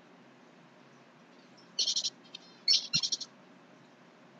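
A small bird chirping: two short bouts of high calls, about two and three seconds in.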